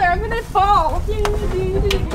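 A child's wordless vocalising, bending in pitch at first and then one long held note near the end.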